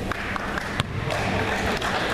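Basketball game sounds in a school gym at the tip-off: steady crowd chatter with a few sharp knocks, the loudest just under a second in.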